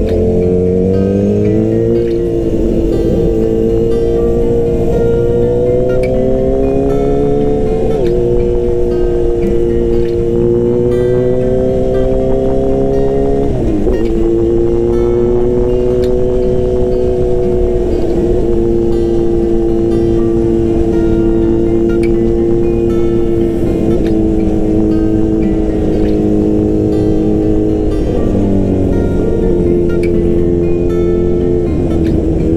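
Motorcycle engine running under way, heard from the rider's seat with low wind rumble. Its drone climbs and falls slowly with the throttle, with brief sharp dips at gear changes about eight and thirteen seconds in and again near the end.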